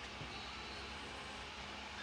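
Steady low background noise: an even hiss with a low hum underneath, with no distinct events.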